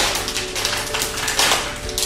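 A snack packet crinkling and crackling in the hands as it is torn open, with a run of quick dense crackles.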